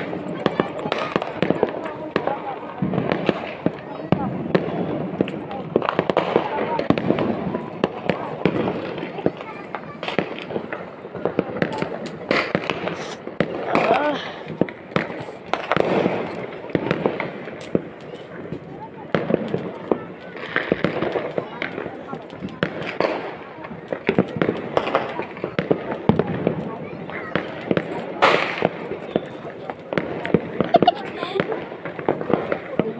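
Firecrackers popping and crackling, with sharp cracks scattered throughout, under people's voices.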